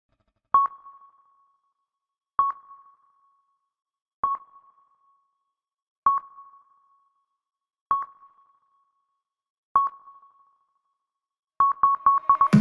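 A sonar-like electronic ping, a single clear tone struck six times about two seconds apart, each ringing out briefly. Near the end the pings come in a quick run.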